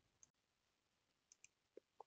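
Near silence with a few faint, short computer mouse clicks: one near the start and a quick pair about a second and a half in.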